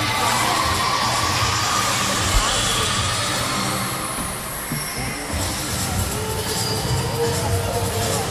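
Busy gymnastics-arena ambience: recorded music played over the hall's speakers, probably for a floor routine, with crowd chatter and some cheering. There is one brief knock about two and a half seconds in.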